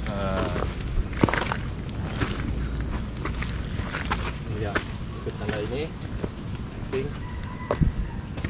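Footsteps of a hiker walking on a wet dirt forest trail, irregular soft steps and knocks over a steady low rumble on the microphone.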